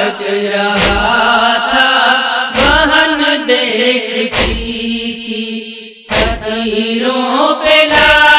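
A woman's voice chanting a nauha, a Muharram lament, in a slow, wavering melody. A sharp beat keeps time about every two seconds.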